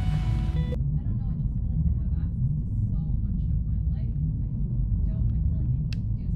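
A music cue cuts off under a second in. After that comes a steady low rumble with faint, indistinct conversation above it.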